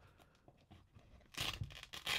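Hook-and-loop strap on an Air Jordan 8 sneaker being peeled open: a short ripping sound starting about a second and a half in.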